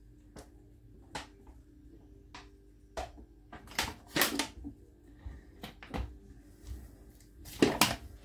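Drinking water from a large plastic bottle: a series of short gulping and swallowing sounds at uneven intervals, with a louder burst near the end, over a faint steady hum.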